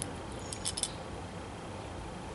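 A few faint metal clicks of side cutter jaws against a molly bolt's screw head and washer, about half a second in, over a steady low hum.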